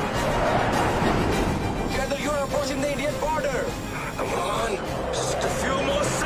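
Film soundtrack mix: dramatic score music over a steady rush of jet engine noise, with a wavering voice about two seconds in.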